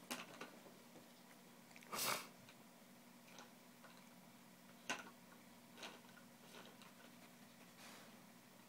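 Plastic toy cups knocked and tapped by a baby's hand: a few scattered clacks, the loudest about two seconds in and another near five seconds, over a steady low hum.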